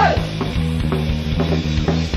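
Ska-punk band playing on a lo-fi live cassette recording: distorted electric guitar, bass and a drum kit with strikes about every half second, in an instrumental stretch between sung lines.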